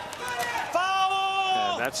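A single drawn-out shout, one voice held at a steady high pitch for nearly a second, with the commentator's speech starting at the very end.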